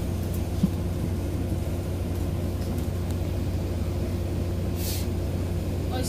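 Diesel engine of a Wright Gemini 2 double-decker bus (Volvo B9TL) running steadily, heard from inside the lower deck. About five seconds in there is a short hiss of compressed air.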